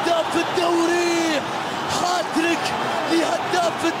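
Voices singing a repeating chant: short notes and then one held note about a second long. Drum-like beats and a steady wash of crowd noise run underneath.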